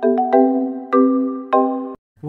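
Background music: a simple melody of struck, chiming notes that ring and fade, about two notes a second, cutting off suddenly just before the end.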